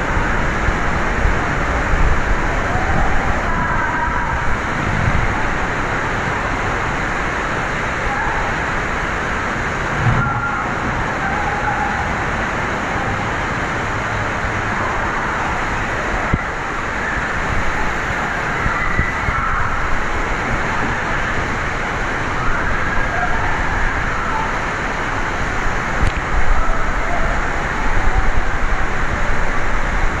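Steady outdoor rushing noise with heavy wind rumble on the microphone, over which faint distant shouts rise now and then.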